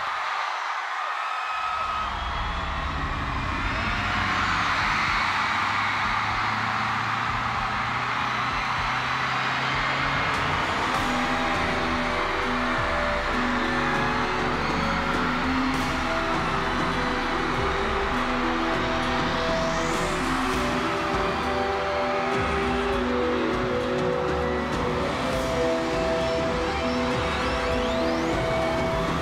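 Arena crowd cheering continuously in the dark while a concert intro builds: a low drone at first, then sustained synthesizer chords come in about eleven seconds in, with a rising sweep near the twenty-second mark.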